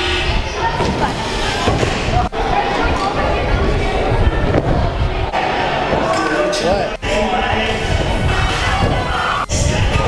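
Thuds of barefoot flips landing on a sprung gym floor and foam mats, with voices echoing in a large hall and music playing underneath.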